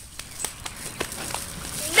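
A few light, scattered ticks and faint rustling as a brown paper bag is opened and handled on pavement.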